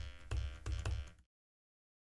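A few synth notes from Bitwig's PolySynth, played from the computer keyboard and heard faintly through computer speakers picked up by the microphone, a sign that the audio engine is back on and producing output. The notes stop a little over a second in.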